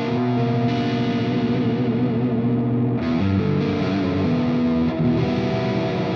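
Electric guitar played through Blue Cat Audio's Axiom amp-simulator software on a crunchy, distorted tone. It plays sustained chords, which change about three seconds in.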